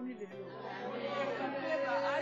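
Several women singing together, one voice holding a long, steady note in the second half.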